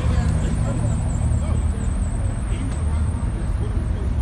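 Deep, steady rumble of car engines running at low speed, with people chatting in the background.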